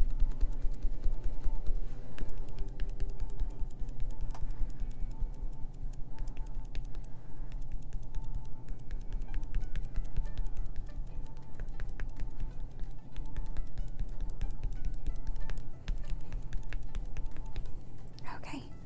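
Foam stenciling sponge dabbed rapidly up and down on a stencil over a painted wood block, making a dense run of quick soft taps, over quiet background music.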